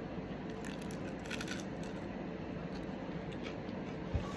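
Close-up chewing after a bite into an air-fried plant-based cheeseburger pocket, with a few faint crunches about a second in, over a steady low room hum.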